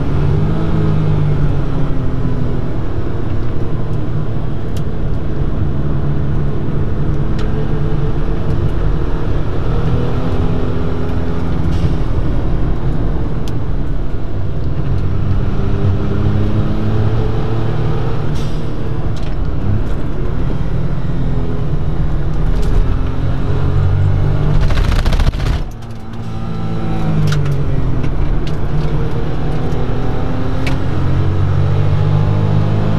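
Suzuki Cappuccino's 657 cc turbocharged three-cylinder engine heard from inside the cabin on track, its note falling while slowing for a corner and rising again under acceleration. Near the end a short burst of hiss comes just as the engine sound drops away for a moment, and the engine then climbs in pitch again.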